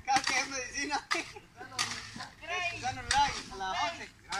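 Shovel blade scraping and striking through a concrete mix on the ground: a few short, sharp scrapes at irregular intervals about a second apart. Voices talk in the background.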